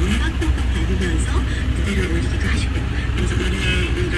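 Steady low rumble of the Hyundai Porter truck's engine idling, heard inside the cab, with talk from the radio playing over it.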